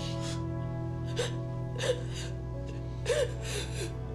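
Soft, sustained background score under a woman crying: several gasping, sobbing breaths with small catches in the voice.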